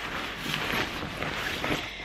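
Thin, windbreaker-like nylon fabric of a packable daypack rustling as it is handled and smoothed flat.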